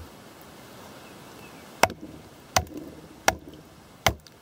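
Wooden baton striking the spine of an Ontario RTAK II knife blade wedged in a log, driving it down to split the wood: three sharp knocks, less than a second apart, in the second half.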